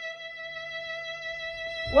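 Recorded folk-dance music holding a single long sustained note, steady and unchanging. Right at the end a low thump breaks in.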